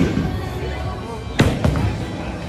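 Bowling alley din: a steady low rumble of rolling balls and lane machinery, cut by sharp knocks, one at the start and a louder one about one and a half seconds in, over background music.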